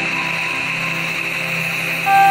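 Steady rush of waterfall water, an even hiss with no breaks, under background music that holds a single low note between phrases.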